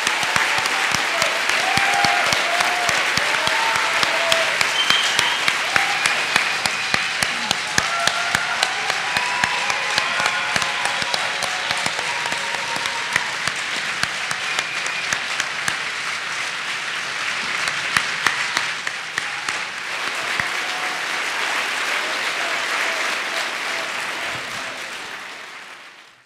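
A large audience applauding, a dense patter of many hands clapping, with voices calling out and cheering mixed in through the first half. The applause fades out at the very end.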